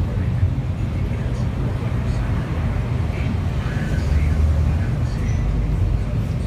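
City bus in motion, heard from inside the cabin: a steady low engine and road rumble that swells slightly about four seconds in, with faint passenger voices in the background.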